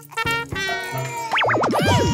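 Cartoon music with a comic boing sound effect: a pitch that wobbles rapidly up and down, starting a little over halfway in and sliding lower near the end.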